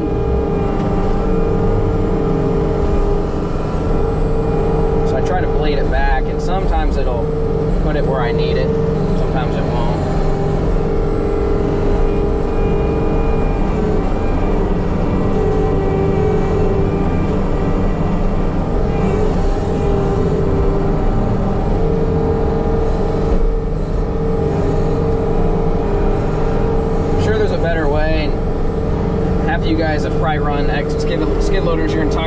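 Skid loader's engine running steadily at high revs, dipping slightly in pitch for a while midway under load, as the tracked machine dumps and pushes dirt.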